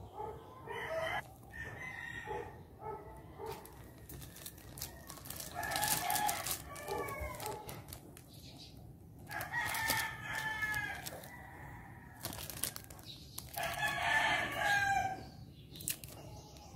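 Rooster crowing three times, each crow about a second and a half long, after a few short clucking calls in the first seconds.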